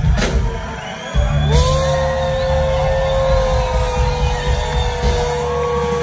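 Live rock band playing loudly on electric guitar, bass and drums: a loud hit at the start, then, after a brief lull, a long held electric guitar note from about a second and a half in, over steady bass and drums.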